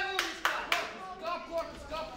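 Three quick, sharp smacks of boxing gloves landing during sparring in the first second, the last the loudest, with voices calling out around the ring.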